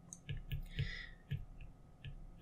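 Pen stylus tapping and stroking on a tablet surface while writing by hand: several light, separate clicks, with one short scratchy stroke just before the middle.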